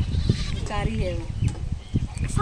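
Young goat kids bleating: a short bleat falling in pitch about a second in.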